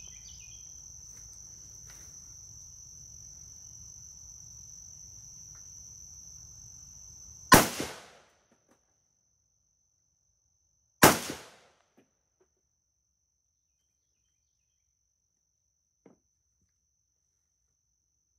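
Two shots from a Hungarian AK-63DS 7.62×39mm rifle, about three and a half seconds apart, each with a short echoing tail. Insects trill steadily in the background.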